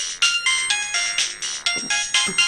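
Mobile phone ringtone playing: a melody of short electronic tones stepping up and down in pitch over a steady beat of about four clicks a second.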